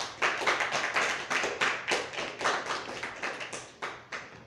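A small audience clapping, with separate claps still distinct, stopping just before four seconds in.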